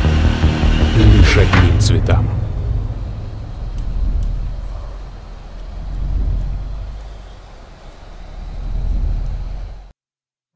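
Promo-trailer sound design: sharp whooshing hits over a heavy low boom in the first two seconds, then a deep rumble that swells and fades three times before cutting off suddenly at the end.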